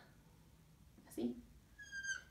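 Whiteboard marker squeaking briefly against the board near the end, a short high-pitched squeal. A short voice sound comes about a second in.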